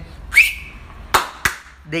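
A short whistle that rises quickly and then holds a high note for a moment, followed by two sharp clicks about a third of a second apart.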